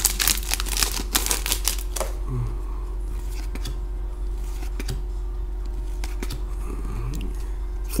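A trading-card pack wrapper (a 2012-13 Panini Classic Signatures hockey pack) being torn open and crinkled for about two seconds. Then quieter handling of the cards, with a few light clicks.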